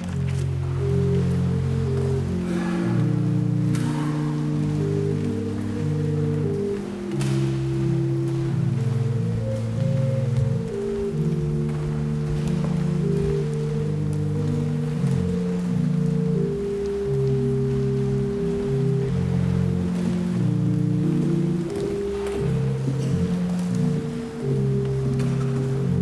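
Church pipe organ playing slow, sustained chords low in its range, the chords changing every second or two.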